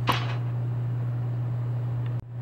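Water pump's electric motor running with a steady low hum, with a short hiss at the very start.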